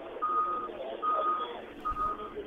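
Vehicle reversing alarm beeping at an even pace, about one beep every 0.7 seconds, three times, over outdoor street noise, heard thinly through a narrow-band phone line.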